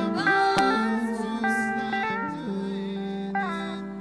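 Live gospel worship music in a pause between sung lines: the band holds sustained chords that shift and glide from note to note, growing softer toward the end. A sharp click sounds about half a second in.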